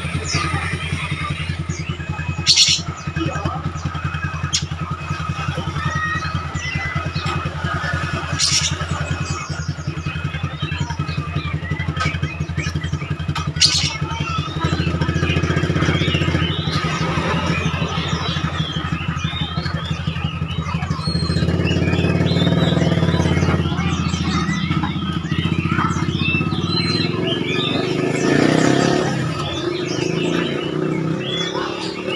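A motorcycle engine idling nearby, a steady low hum throughout, with songbirds chirping and whistling over it.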